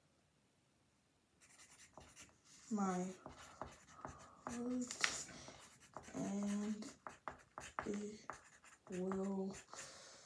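Pencil writing on paper, with scratchy strokes starting about a second and a half in, between short, soft murmured words spoken while writing.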